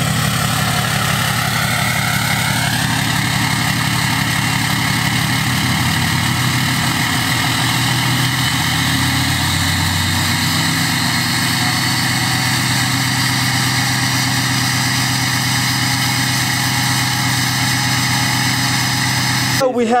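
Ram pickup's diesel engine idling steadily after a cold start, recorded close to the exhaust tip. In the first few seconds a high whine climbs in pitch, then holds steady with the idle.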